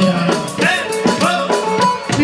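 Amplified live music from a Bulgarian orkestar band in Greek style: an ornamented, twisting lead melody, likely clarinet, over a steady drum kit beat.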